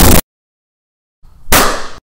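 Cartoon sound effects: a very loud, dense burst of noise that stops abruptly just after the start, then silence, then about a second and a half in a sharp hit with a bright ringing tail that is cut off short.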